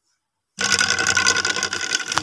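A fish-shooting slingshot is released and gives a sudden, loud, buzzing whirr about half a second in that runs for about a second and a half, ending in a click. It is the sound of the shot, and the shot hits the fish.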